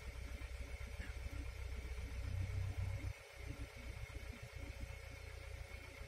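Low, steady rumble of a car engine idling, heard from inside the cabin, with a faint steady whine above it.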